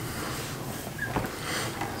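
Faint handling noise of a hand rubbing along the back of an electric guitar's flame maple neck, with a small click about a second in.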